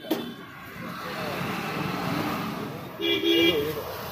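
Road traffic noise from a busy street, with faint voices, and a vehicle horn sounding briefly about three seconds in.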